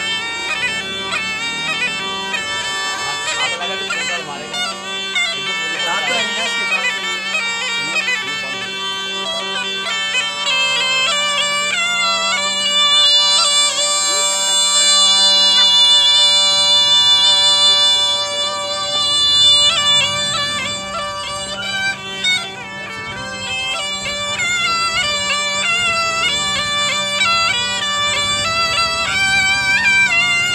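Snake charmer's pungi (been), a gourd-bodied double-reed pipe, playing a wavering melody over a steady drone. Midway it holds a long high note for several seconds before returning to quicker ornamented phrases.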